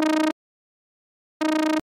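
Two short notes at the same pitch from the Harmor additive software synthesizer, a tone rich in overtones. Its filter cutoff is swept by a fast LFO, giving a slight rapid wobble. The first note ends about a third of a second in and the second sounds from about a second and a half in.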